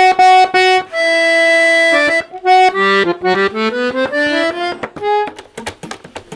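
Piano accordion played: a few short chords, a note held for about a second, then a rising run of notes. A quick flurry of clicks comes near the end.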